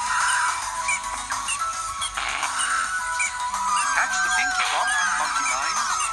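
Children's TV programme soundtrack playing through a screen's speaker: light music with bleeping sound effects, joined in the second half by high, wavering squeaky calls.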